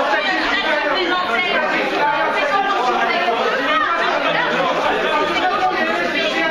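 Several people talking at once, their voices overlapping into a steady chatter in a large hall.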